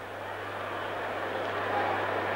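Steady rushing background noise, with no tones in it, slowly growing louder over a low steady hum.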